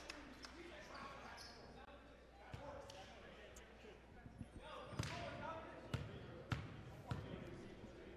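A basketball bounced on a hardwood gym floor, a few sharp single bounces in the second half, as a free-throw shooter dribbles before the shot, under faint gym murmur.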